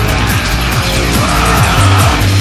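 Dark psytrance / terrorcore electronic music: a fast kick drum and rolling bass, with a high screeching synth sweep that sets in about halfway through.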